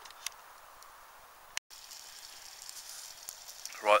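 A wood fire crackles faintly in a stainless steel twig stove, with a couple of sharp pops. After a sudden cut about a second and a half in, sausages sizzle in oil in a mess tin on the stove with a steady high hiss.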